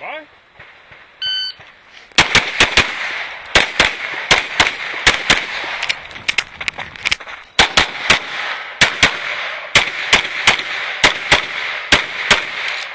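A shot timer beeps once about a second in. Then a red-dot race pistol fires rapid strings of shots, mostly in quick pairs and triplets, sharp cracks that keep coming to the end.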